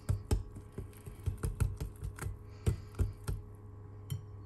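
Metal wire whisk beating thick pancake batter in a glass bowl, its wires clicking irregularly against the glass, about a dozen clicks that stop shortly before the end.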